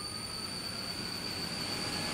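Electric motor and fan of a home-built vortex machine running with a steady rush of air. A faint whine slowly rises in pitch and the sound grows a little louder as it speeds up.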